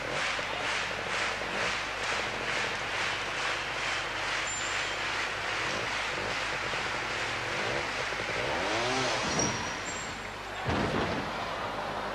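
Two-stroke trials motorcycle engine revving up and down in short bursts as it climbs steep obstacles, over the steady noise of an indoor hall, with an even beat of about four strokes a second through the first few seconds.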